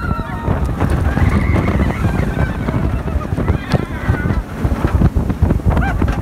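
Roller coaster ride heard from the train: heavy wind rush on the microphone and the train's rumble along the track, with riders screaming now and then.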